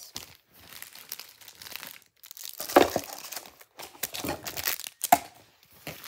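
Foil-wrapped Pokémon trading card booster packs and their cardboard box being handled, crinkling and rustling irregularly, with two louder sharp crackles about three and five seconds in.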